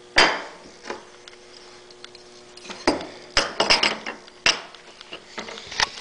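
Cast-metal air-compressor pump parts being handled and set down on a wooden workbench. A sharp clank comes just after the start, then a run of knocks and clatters about three to four seconds in, and a single knock near the end.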